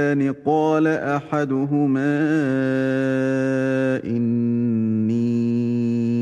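A man reciting the Qur'an in Arabic in a melodic chant. It moves through the words for the first two seconds, then holds long drawn-out notes, with a brief break about four seconds in.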